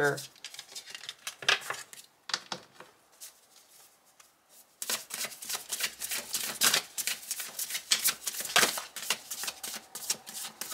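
Tarot cards handled and shuffled by hand. There are a few scattered clicks as the cards are gathered, a short pause, then from about five seconds in a rapid, continuous run of card flicks as the deck is shuffled.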